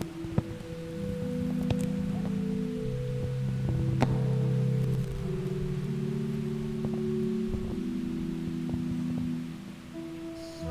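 Organ playing slow, held chords that shift every second or two, with a sharp click about four seconds in.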